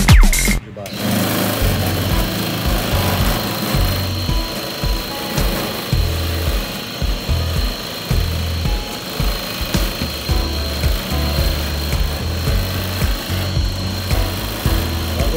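Dance music cuts off about half a second in, leaving an Embreex whole-body vibration platform running under a person's weight: a steady high whine over an uneven low buzz and thrum from the vibrating plate.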